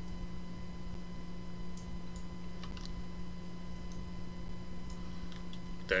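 Steady low electrical hum with a thin steady tone above it, and a few faint, scattered computer-mouse clicks as a curve point is placed.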